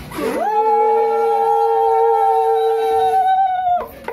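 Conch shells (sangu) blown to mark the Pongal pot boiling over: two long, steady notes held together, the lower one stopping about three seconds in and the higher one just before the end.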